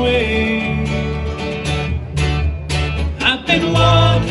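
Live acoustic folk band playing: strummed acoustic guitar, plucked mandolin and an electric upright bass carry the tune between sung lines. A held vocal note fades just after the start, and a voice comes in again near the end.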